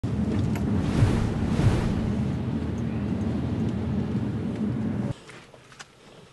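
Vehicle engine and road noise, a loud steady rumble with brief rises in pitch, stopping abruptly about five seconds in.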